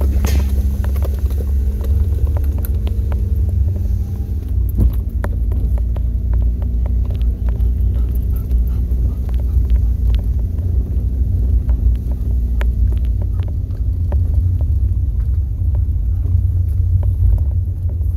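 A vehicle's engine running at low speed while it drives slowly, a steady low rumble with a faint hum, with many small ticks and crackles from the tyres on the rough road surface.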